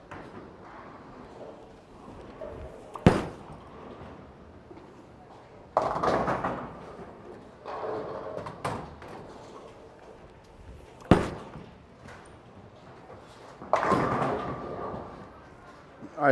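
Bowling alley noise: three sharp knocks and three longer crashing clatters over a steady background, the sound of bowling balls hitting the lanes and pins being knocked down.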